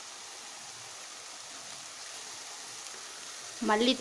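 Minced chicken frying in a pan with a steady sizzle, while spice powders are being added.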